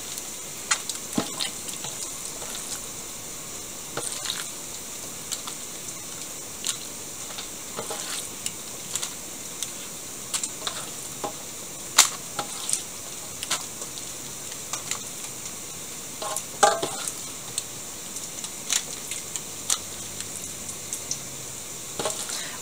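Raw marinated chicken pieces set down by hand on potatoes in a parchment-lined foil tray: scattered soft clicks and crinkles of paper and foil, the sharpest about halfway through. A steady high hiss runs underneath.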